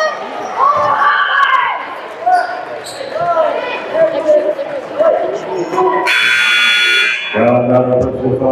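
Gym scoreboard buzzer sounding for just over a second about six seconds in, over spectators' voices and shouts in a large hall.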